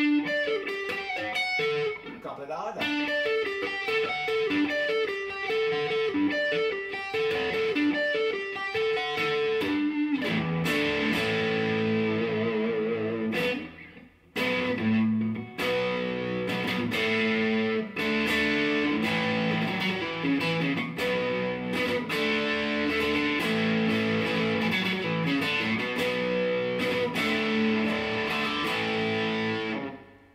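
Electric guitar played through a Laney Cub Supertop 15-watt valve amp head (EL84 output valves) and matching cab, with the gain turned up high and the boost on, giving an overdriven rock tone. He plays continuous riffs and held notes, with a short break about fourteen seconds in.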